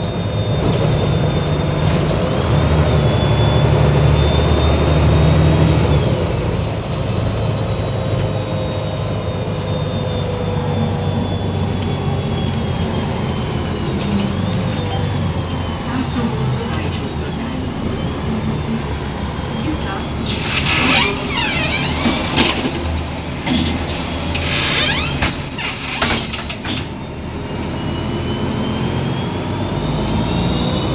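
Volvo 7700 city bus heard from inside the cabin, its engine and drivetrain running steadily under way with a faint high whine that rises and falls. About two-thirds in comes a run of loud air hisses and a brief high brake squeal as the bus pulls up at a stop.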